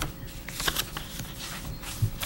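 Sheets of paper being handled and shuffled near a desk microphone: a few soft, scattered rustles and small clicks over quiet room tone.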